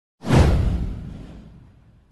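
Whoosh sound effect for an animated intro: one quick swell with a deep low boom, starting about a quarter second in and fading away over the next second and a half.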